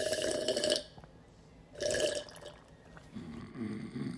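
Two loud slurping sips from a teacup, the first about a second long and the second shorter, about two seconds in. A low, rippling snore begins about three seconds in.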